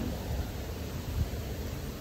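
Wind on the microphone of an outdoor recording: a steady, uneven low rumble with a faint hiss above it.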